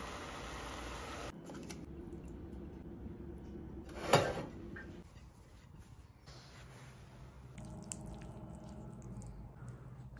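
Quiet kitchen handling sounds as a cheese mixture goes into a pot of hot spaghetti. A soft steady hiss fills the first second or so, and one sharp knock comes about four seconds in.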